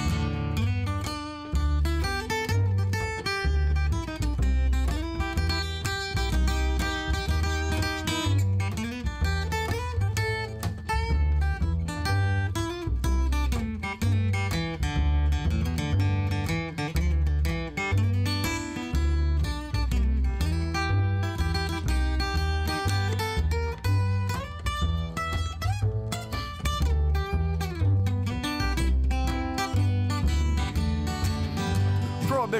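Instrumental break with no singing: a steel-string acoustic guitar picking a lead line over an upright bass plucking a steady low bass line.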